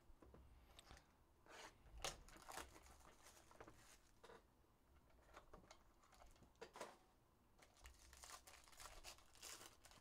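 Faint tearing, rustling and crinkling as a cardboard trading-card hobby box is opened and its foil packs handled, with scattered light clicks and scrapes; the loudest comes about two seconds in.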